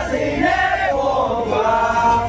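A group of voices singing together in long held notes, choir-like.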